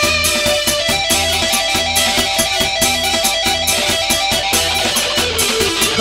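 Live dangdut band music, an instrumental passage led by electric guitar over a steady beat.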